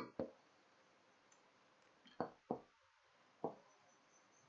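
Near silence, broken by a few faint, short clicks spaced irregularly through it.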